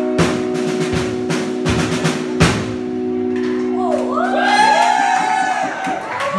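Live rock band ending a song: four heavy drum-and-cymbal hits about three-quarters of a second apart over a held electric guitar chord, which rings on after the last hit. From about four seconds in, voices whoop as the song ends.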